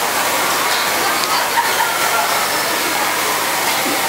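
Audience applause, a steady spread of clapping with some laughter mixed in.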